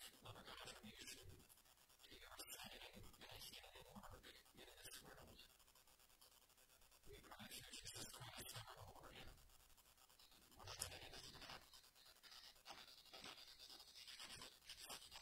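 Near silence: quiet room tone with faint rustling, like paper being handled, and faint low voices.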